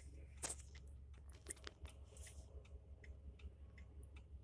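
Faint steady clicking, about three clicks a second, typical of a car's turn-signal indicator, over a low engine rumble.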